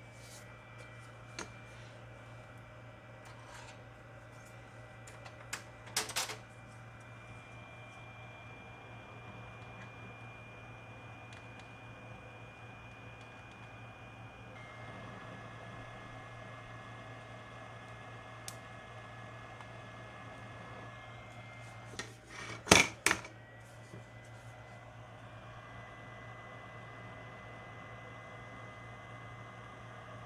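Soldering work on a TV power board while a diode is replaced: a steady low electrical hum with faint thin whines over it, broken by a few sharp taps and clicks of tools, the loudest a little past the middle.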